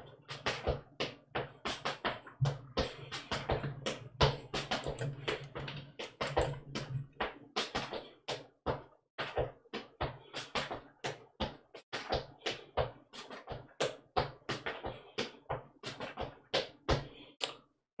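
Clogging basic step danced in sneakers on a concrete floor: a quick, even run of foot taps and scuffs, about four a second.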